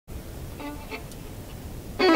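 Low, steady room rumble on a stage, with two brief faint pitched sounds about half a second and a second in.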